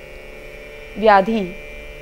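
A steady hum of several held tones, with a woman's voice drawing out one syllable about a second in.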